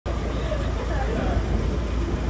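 A Nissan pickup truck's engine running as the truck rolls slowly forward: a steady low rumble.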